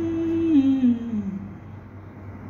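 A woman humming with closed lips: one held note that falls in steps to a lower pitch and stops about a second and a half in.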